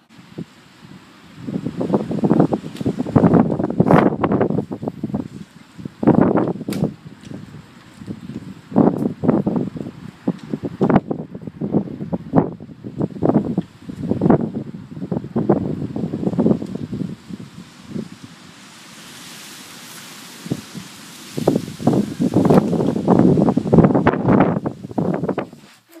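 Wind buffeting the microphone outdoors in irregular gusts, with rustling mixed in. It drops to a softer, steadier hiss for a few seconds about three-quarters of the way through, then gusts hard again.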